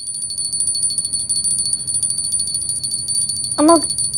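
A small handheld puja bell rung rapidly and without pause: a steady high ring with fast, even strikes. A brief voice comes near the end.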